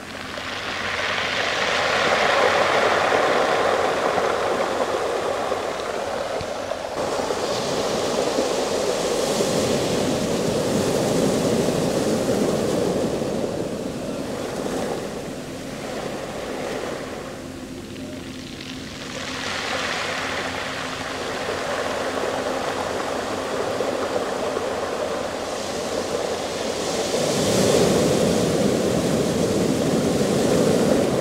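Sea waves breaking and washing up a shingle beach of small rounded stones, with the backwash pulling the pebbles down with the water. The rush of water swells and eases in slow surges.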